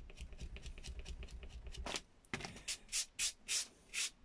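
An eraser block rubbed over watercolour paper, lifting off dried masking fluid. Quick, even rubbing for about two seconds, a brief pause, then slower separate strokes about three a second.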